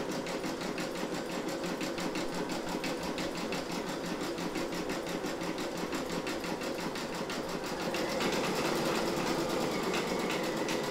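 Brother Innovis V5LE embroidery machine stitching a bean stitch through vinyl on stabilizer, its needle running at a steady rapid rate while the hoop moves. It gets a little louder about eight seconds in.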